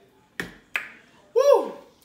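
Two sharp clicks about a third of a second apart, then a woman's loud wordless vocal exclamation with a falling pitch, an appreciative sound after tasting a drink.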